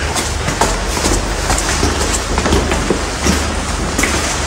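Footsteps of a group of people walking on bare concrete floors and stairs: many irregular clicks and scuffs over a steady low hum.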